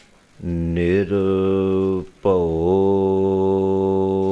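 A man chanting a Sikh devotional line into a microphone in long, steady held notes. It begins about half a second in and breaks briefly about two seconds in before another long note.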